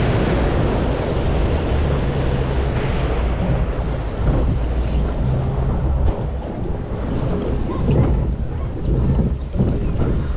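Reverchon log flume boat ploughing through the water after a drop: rushing, splashing spray that fades over the first few seconds, then water swirling along the hull as the boat glides down the trough, with heavy wind rumble on the microphone throughout.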